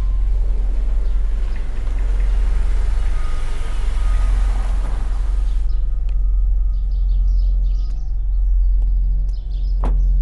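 Car tyres crunching on a gravel lane as a Chevrolet sedan drives up, the noise stopping abruptly about six seconds in as it halts. Birds chirp after that, over a steady low music drone, and a single sharp knock sounds near the end.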